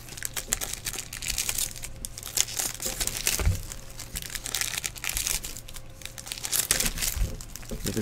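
Trading-card pack wrappers crinkling and crackling in a run of quick irregular rustles as packs are torn open and the cards handled.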